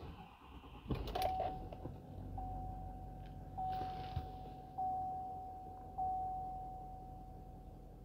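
The 6.6-litre L5P Duramax V8 diesel is started: a short crank about a second in, then the engine settles into a low, steady idle heard from inside the cab. Over it the dashboard warning chime dings about every second and a bit, four times, each ding fading away.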